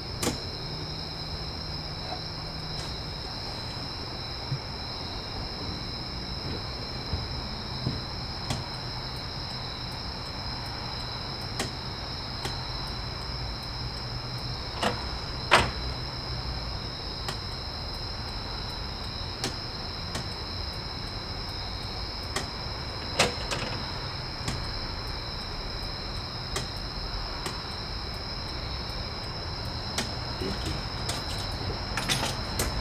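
Crickets chirping in a steady high trill, with a low steady hum underneath. Scattered irregular clicks and knocks sound throughout, the loudest about halfway through and again later.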